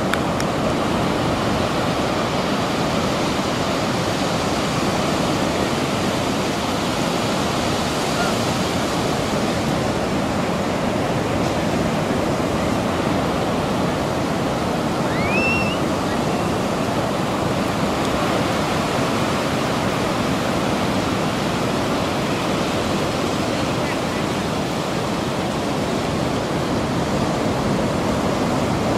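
Ocean surf breaking on a beach: a steady rushing noise that holds an even level throughout. About halfway through there is a short rising squeak.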